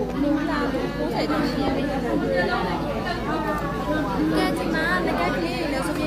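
Speech: a woman talking, with other voices chattering in a large room.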